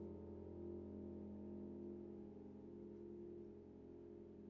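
Faint, held piano chord ringing out and slowly fading, the last of a piece dying away.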